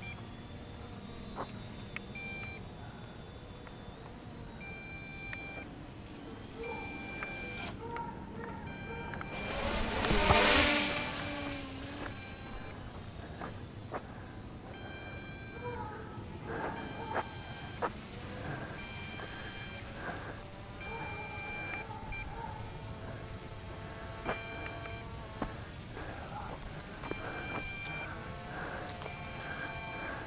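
Short, high electronic beeps repeating every second or two from the drone's remote controller, typical of a lost signal or low battery. About ten seconds in, a rush of noise swells loudly and fades.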